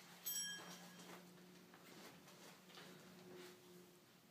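Faint sounds of a person getting up out of an upholstered armchair: a short high-pitched sound just after the start, then soft rustling over a low steady hum.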